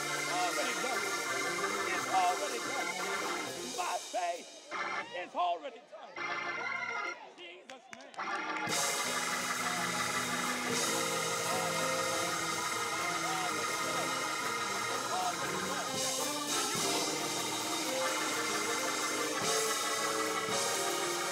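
Church organ holding steady chords with voices praying and calling out over it. The sound thins and dips for a few seconds about four seconds in, then the organ comes back fuller just before the ninth second and holds steady.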